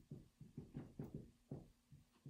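Dry-erase marker writing on a whiteboard: a faint run of short, quick strokes, several a second, as a word is lettered.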